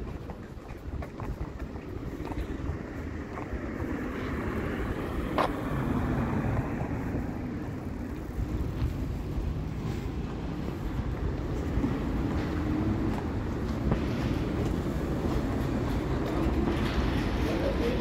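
Street ambience: traffic running along a town street, a low steady rumble that grows louder about four seconds in.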